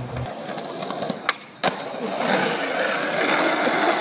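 Music cuts off just after the start, then skateboard wheels rolling over pavement, with two sharp clicks about a second and a half in and the rolling growing louder after that.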